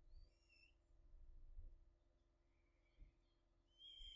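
Near silence: faint room tone, with a brief high chirp at the start and a faint rising-and-falling whistle-like glide near the end.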